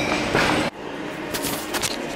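Steady rumbling background noise of a busy shopping centre that cuts off abruptly under a second in. Quieter room noise with a few sharp clicks follows.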